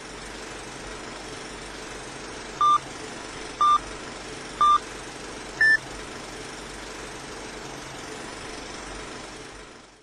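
Old-film countdown leader sound effect: a steady hiss like projector noise, with three short beeps a second apart followed by a fourth, higher-pitched beep. The hiss fades out near the end.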